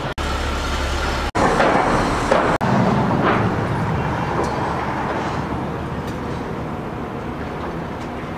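City street traffic noise, a steady rumble of passing vehicles, louder for a couple of seconds early on, broken by brief audio dropouts about one and two and a half seconds in.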